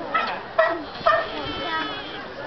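Sea lion barking: three short, loud barks about half a second apart.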